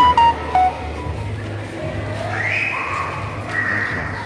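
A few short beeping electronic notes at different pitches right at the start, then a higher wavering tone from about two seconds in, over a low steady hum.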